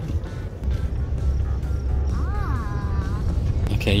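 Low rumble of a Nissan pickup driving slowly over rough farm ground, with wind buffeting through the open window; the rumble grows louder about half a second in. A short hummed note rises and falls a little past halfway.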